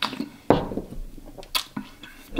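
Wet mouth sounds of someone tasting a sip of beer: a few short lip smacks and clicks, the strongest about half a second in and another near a second and a half.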